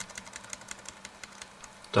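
A quick run of uneven clicks, about seven a second, from a computer mouse's scroll wheel as a page is scrolled.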